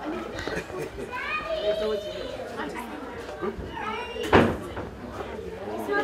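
Indistinct talk of several people at once, children's voices among them, with one sharp knock about four seconds in.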